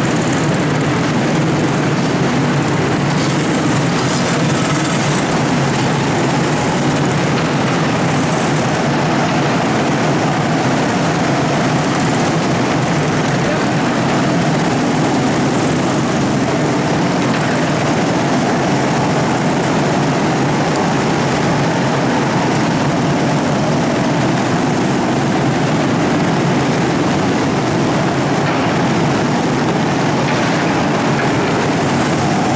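Many small go-kart engines running together in an indoor kart hall, a loud, steady drone.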